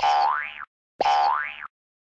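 Cartoon boing sound effect played twice, about a second apart, each a short springy twang with a tone sliding upward.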